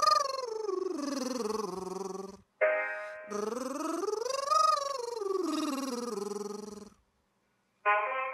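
A male singer's voice runs a vocal warm-up scale twice: it climbs about an octave and a half, comes back down and holds a low note. A short piano chord sounds between the two runs, and piano notes start again at the very end.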